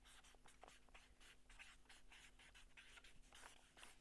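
Faint marker pen writing a word on flip-chart paper: a run of short, quick strokes.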